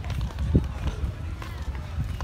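Low rumble of wind buffeting the phone's microphone, with scattered voices of people chatting in the background.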